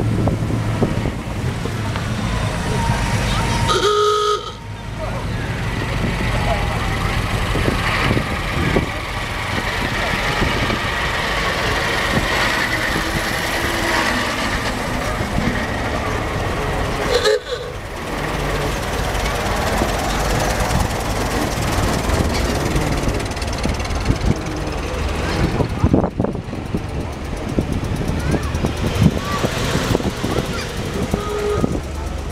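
Parade cars rolling slowly past with engines running, amid steady crowd chatter. Brief horn toots sound about four seconds in and again at about seventeen seconds, each followed by a short drop in sound.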